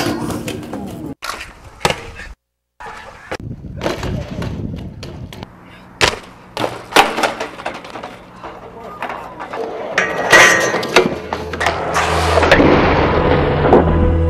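BMX street riding sounds in quick cuts: wheels rolling on concrete, a bike grinding down a metal handrail, and sharp knocks of hard landings and a fall, with brief shouts. About ten seconds in, low music comes in and swells toward the end.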